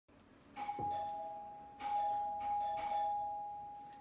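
Two-tone doorbell chime ringing ding-dong, a higher note then a lower one, pressed a second time about a second later with a couple more strikes; the notes ring on and fade slowly.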